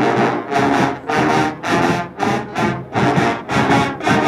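A college marching band of brass and drumline strikes up loudly all at once and plays punchy accented blasts, about two a second. The sousaphones, trumpets and trombones play together over the drums.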